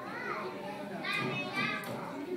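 Young children's voices: a few short, high-pitched calls and babbles about half a second apart, with a gliding pitch.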